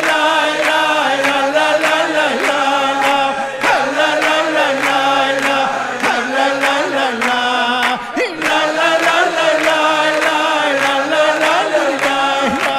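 Jewish vocal music: a male lead singer with backing voices over sustained chords and a steady beat.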